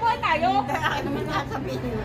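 Speech only: people talking in conversation.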